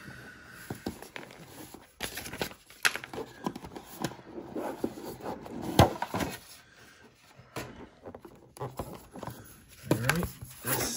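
Cardboard packaging being handled: a box's insert tray is lifted out, with scattered scrapes, rubs and small knocks, the sharpest a little before six seconds in.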